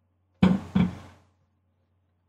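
Two sharp drum-like hits about a third of a second apart, each dying away quickly, over a faint steady low hum.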